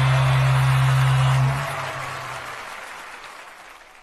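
The song's last low note is held and stops about one and a half seconds in, over studio audience applause. The applause then fades out steadily.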